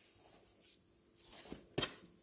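Faint rustling of tissue paper as a boot is lifted out of its box, with two short, soft knocks near the end as it is handled.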